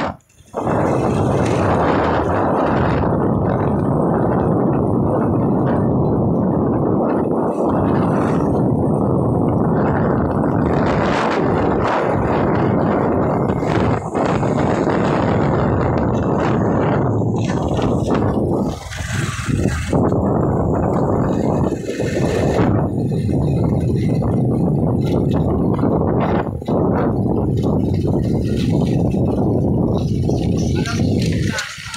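Steady rush of wind over the microphone, with road noise, from a motorcycle riding along a road; it eases briefly a little over halfway through.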